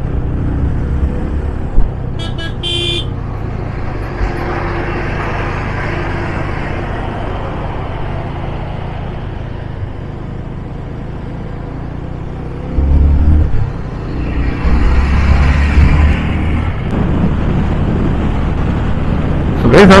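Riding noise on a Yamaha FZ25 motorcycle: the single-cylinder engine running under steady wind rush, with a brief horn toot about two seconds in. The engine and wind swell louder twice around the middle, as the bike accelerates past a van.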